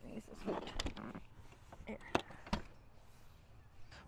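A few sharp clicks and knocks, the two loudest close together past the middle, from a seat being fitted onto its metal mounting bracket, with low voices at the start.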